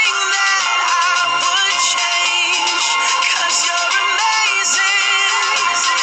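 A recorded song playing: a singer's voice carrying a wavering melody over steady instrumental backing.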